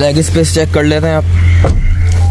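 A man's voice says a word over a loud, steady low hum that runs throughout; the voice stops about a second in and only the hum remains.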